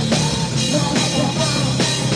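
Rock band playing live at full volume, a drum kit keeping a driving beat under the full band.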